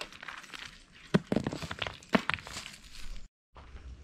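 Footsteps on gravelly, sandy ground: a handful of irregular crunches and clicks, broken off by a brief dropout near the end.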